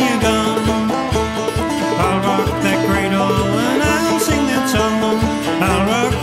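Instrumental passage of an old-time string-band tune: a steady beat under a lively melody with sliding notes.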